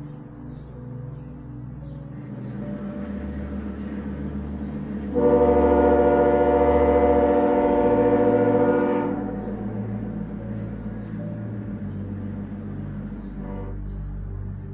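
A train horn sounding once, held steady for about four seconds from about five seconds in, then fading, over a low steady drone.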